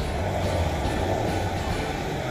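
Steady low rumble of a motor vehicle running nearby, under faint background music.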